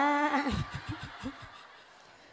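A woman laughing into a microphone: a held vocal note breaks into a string of short chuckles that grow fainter and die away after about a second and a half.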